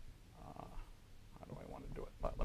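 Faint rubbing of a felt blackboard eraser wiping chalk off a chalkboard, in two spells.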